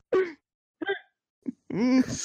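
People laughing in short bursts, then a drawn-out groaning voice that rises in pitch near the end.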